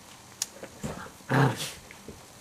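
A small dog gives one short, low vocal sound, close to a growl, about a second and a half in, after a fainter click and a softer sound before it.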